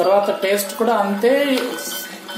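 A person talking, with a steel ladle clinking and scraping against the inside of a clay pot as the stew is stirred.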